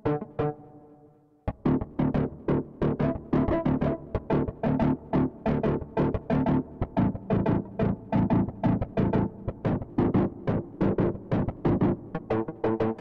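Fluffy Audio AURORROR rhythm patch 'Zombie Lava MW' playing in Kontakt, layering a super-saw synth with clean and distorted plucked guitars. A couple of chord hits die away, then about one and a half seconds in a fast, even, pulsing rhythm pattern of chord stabs starts and keeps going.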